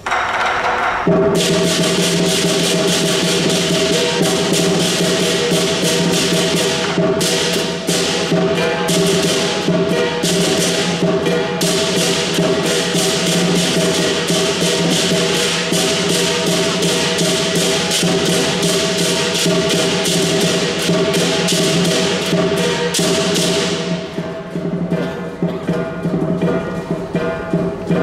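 Lion dance percussion band playing a fast, steady beat on drum, cymbals and gong, with dense cymbal clashes over a ringing tone, starting about a second in. The clashes thin out near the end.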